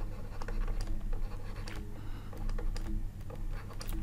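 Stylus tapping and scratching on a pen tablet as a word is handwritten: a run of light, irregular clicks over a steady low hum.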